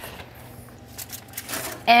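Range oven door being pulled open: a few faint clicks and a knock about a second in, over a low steady hum.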